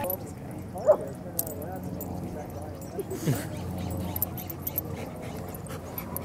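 Dogs playing, with a short yip about a second in and a brief falling whine a little after three seconds, over faint background voices.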